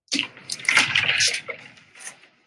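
Wardrobe door being opened: a rushing, scraping noise lasting about a second and a half, with a few small clicks.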